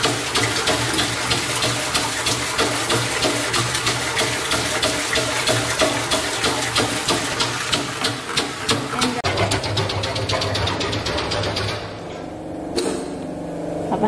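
Pneumatic diaphragm pump running with rapid, even pulsing strokes while perfume product pours into a stainless steel mixing tank. The pulsing stops shortly before the end, leaving a steady low hum, with one sharp click.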